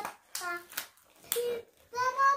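A young child clapping her hands a few times, with short bits of child vocalising between the claps.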